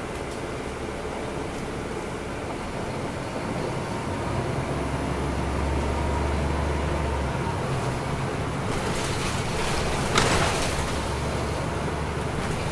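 Cabin sound of a 2009 NABI 40-SFW transit bus under way, heard from a rear seat: its Caterpillar C13 inline-six diesel running with tyre and road noise, the low engine note stronger for a few seconds near the middle. A short rushing sound comes about ten seconds in.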